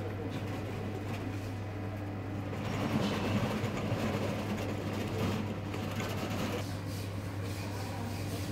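HP LaserJet Enterprise M725 MFP running through its start-up initialization after a firmware upgrade: a steady low machine hum, with a louder stretch of mechanical noise from about three to six and a half seconds in.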